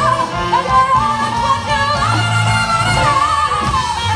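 A female vocalist sings long, wavering held notes over a live jazz-style band with piano, bass and drums.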